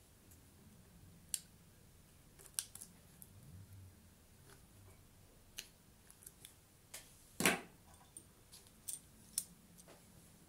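Hand crimping pliers pressing bootlace ferrules onto the stranded conductors of a 3 × 1.5 mm² cord: a run of faint, irregular sharp clicks and snaps from the tool's jaws, the loudest one about two-thirds of the way through.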